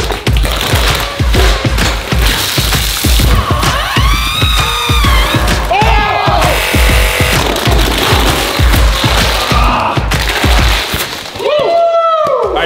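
Background music with a steady bass beat, which cuts out about a second before the end, with brief voices over it a few seconds in.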